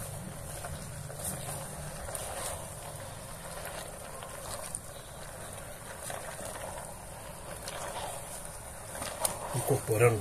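Silicone spatula stirring chopped meat, sausage, tomatoes and herbs in an aluminium pressure cooker: soft, quiet mixing with a few faint scrapes.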